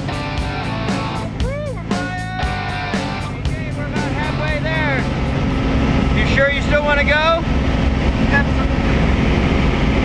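Background music fading out after about five seconds into the steady drone of a small jump plane's engine and propeller heard inside the cabin, with a few voice sounds over it.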